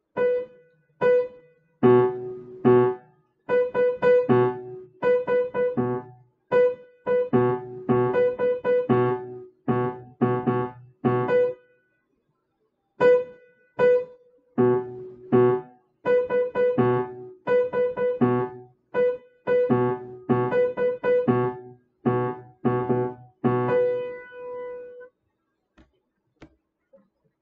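Upright piano playing a rhythm drill in compound meter: short, detached repeated notes and chords in an uneven rhythm. It stops for about a second halfway through, and the drill ends on a held note.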